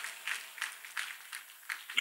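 Light, irregular hand clapping from a church congregation.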